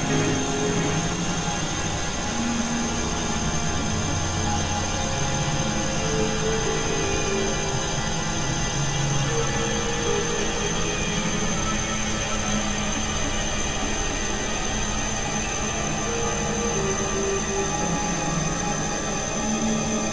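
Experimental electronic synthesizer drone music: a dense, noisy, dark texture with held low notes that shift every second or two under a steady high whine.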